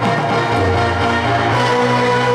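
Loud accompaniment music with sustained held notes over a steady low bass line.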